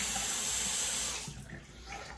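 Tap water running into a sink, dying away about a second and a half in.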